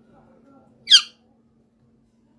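A kitten giving one short, high-pitched mew about a second in.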